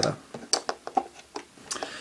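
A handful of short, light clicks and knocks of a screwdriver and hard plastic parts being handled as a screw is seated in a plastic toy playset base.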